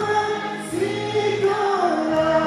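A song with sung vocals over musical backing: long held notes that slide up and down in pitch.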